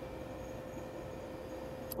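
Faint steady background hum and hiss with a thin constant tone: room tone between words.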